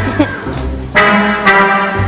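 Orchestral music led by brass, playing held chords with a new loud chord struck about a second in.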